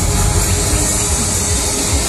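A steady, high hiss of compressed air venting from the fairground ride's pneumatics, cutting off suddenly just as it ends, over dance music.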